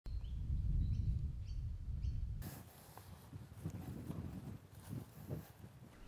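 Outdoor background: a low rumble with a bird giving a short, falling chirp over and over, about every half second. About two and a half seconds in, the rumble stops abruptly, leaving a quieter background with a few faint ticks.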